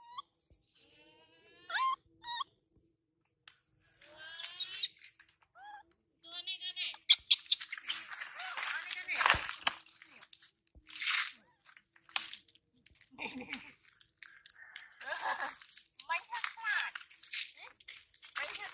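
Dry fallen leaves crunching and rustling as a baby monkey moves through leaf litter. There are short high-pitched squealing cries in the first few seconds.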